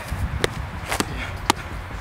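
A football with magnets stuck to one side being juggled, kicked up with the foot and knee: a dull thud about twice a second.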